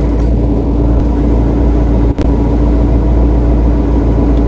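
Loud, steady low rumble of a car running, heard inside the cabin through a phone's microphone, with a brief dropout about two seconds in.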